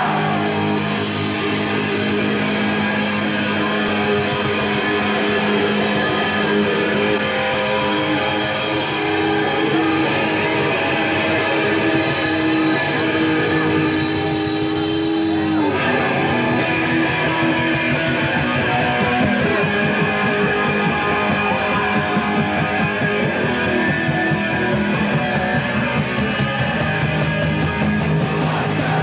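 Hardcore punk band playing live, distorted electric guitars over bass and drums, with the riff changing sharply about halfway through.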